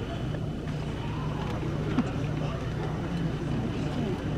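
A steady low hum under faint, indistinct voices, with no clear announcement.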